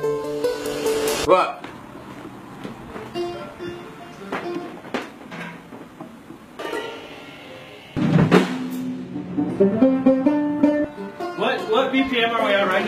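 Band music in a recording studio, with acoustic guitar, bass and drum kit. The playing stops abruptly about a second in, leaving a quieter stretch of scattered drum taps and knocks. About eight seconds in, the band comes back in with a sudden loud start and plays on.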